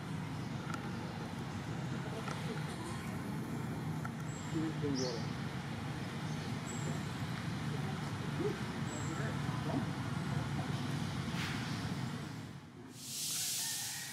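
Outdoor background: a steady low rumble like distant road traffic, with faint far-off voices now and then. Near the end there is about a second of loud hiss.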